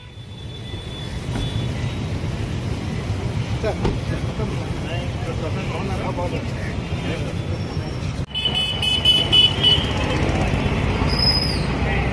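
Street traffic noise: a steady low rumble of passing vehicles. After a sudden break about eight seconds in, vehicle horns toot for a second or two.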